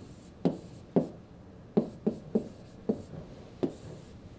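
Pen stylus tapping and stroking on the glass screen of a SMART Board interactive display while an equation is handwritten: about seven short, sharp knocks at uneven spacing, one for each stroke laid down.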